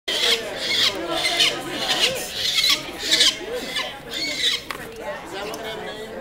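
Downy peregrine falcon chick giving repeated harsh, rasping screams while held in the hand for banding, the distress calls of a handled nestling. The calls come about one or two a second and thin out near the end.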